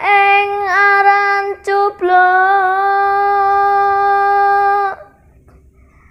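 A boy singing a Javanese song solo, unaccompanied: a short phrase, then one long held note from about two seconds in, which ends about five seconds in.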